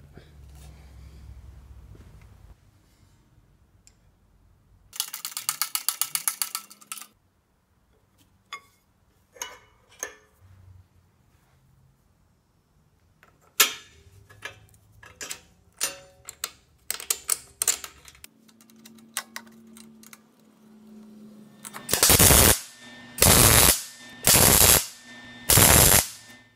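Four short, loud bursts of MIG welding arc crackle near the end, tack-welding a steel bracket. Earlier, a fast ratcheting rattle for about two seconds and scattered clicks of metal parts being fitted.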